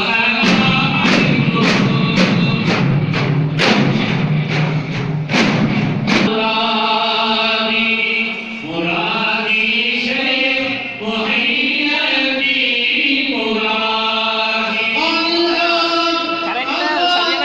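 A group of men chanting a devotional Sufi dhikr in unison, accompanied by frame drums struck in a quick beat. About six seconds in the drums stop and the chant carries on in long held notes.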